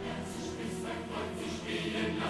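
Choir singing a film song over sustained music.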